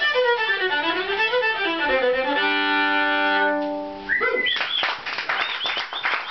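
Fiddle playing the closing run of the tune, ending on a long held chord that fades out. About four seconds in, clapping and a whoop follow the end of the song.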